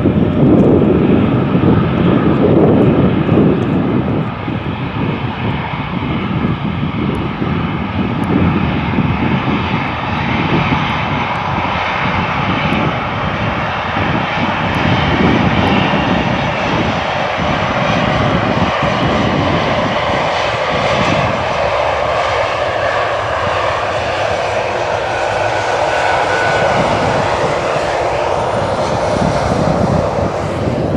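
Airbus A340-300 jet engines running loud on the landing rollout: a heavy rumbling roar over the first ten seconds or so that eases into a steadier, higher whine as the airliner slows and rolls past.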